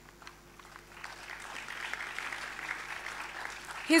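An audience applauding, swelling from about a second in and fading away near the end.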